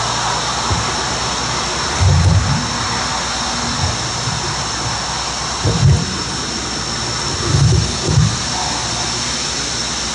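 Podium microphone being wiped and handled, giving low thuds and bumps about two, six and eight seconds in, over a steady rushing background noise.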